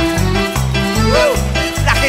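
Cuarteto band playing live: an instrumental passage between sung lines, with a steady bass line stepping about three notes a second under melody instruments.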